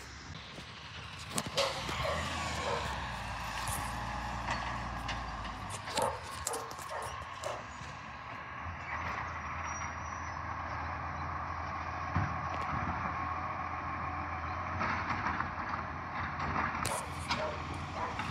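Side-loader garbage truck's diesel engine running steadily at a distance, with a low hum and a steady higher whine over it, and a few short knocks.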